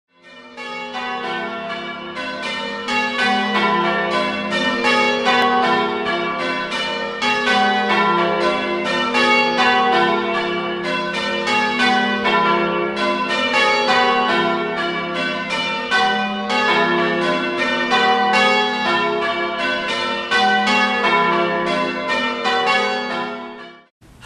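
Church bells ringing changes: a steady, rapid run of bell strikes, each note ringing on into the next.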